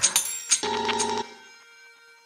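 Electronic dance music played live from sliced loops: short percussive hits, then a held ringing electronic tone. About a second in, the beat drops out, leaving a faint fading tone.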